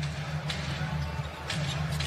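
Basketball dribbled on a hardwood arena court: two sharp bounces about a second apart, over a steady low arena din.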